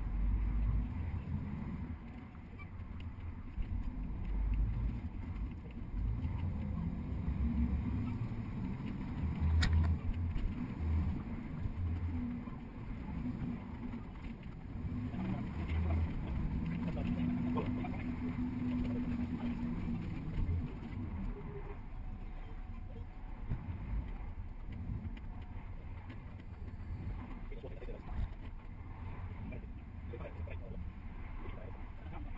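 Double-decker bus and surrounding car traffic moving slowly, heard from the bus's upper deck: an uneven low rumble of engines and tyres that rises and falls in loudness, with a steady engine hum in the middle stretch.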